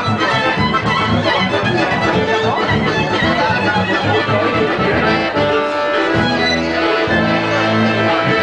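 Live restaurant music playing steadily, with a pulsing bass beat under the melody, settling into long held notes over the last couple of seconds.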